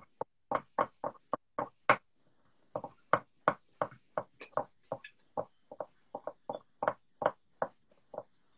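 Pens and pencils tapping and knocking on paper over a tabletop as two hands draw at once: quick, irregular taps, about four a second.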